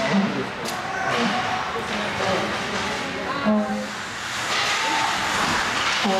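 Spectators talking and laughing over the steady noise of an indoor ice hockey game, with a sharp click just over half a second in.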